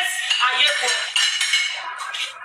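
A person laughing, with light clinking sounds like cutlery.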